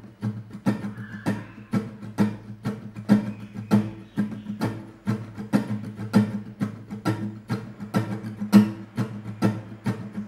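Acoustic guitar strummed in a steady down-up rhythm, about three strokes a second. Ringing chords alternate with muted, percussive scratch strokes.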